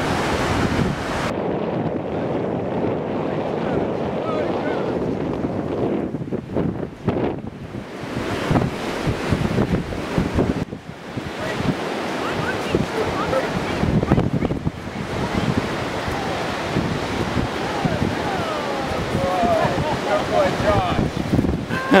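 Wind buffeting the microphone over the steady wash of surf on an open sea beach, swelling and dropping irregularly.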